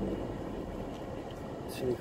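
Nissan Hardbody pickup's engine running steadily at low revs with the vehicle standing still, heard from inside the cab as a low hum.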